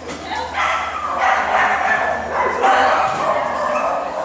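Dogs barking and yipping, with voices mixed in.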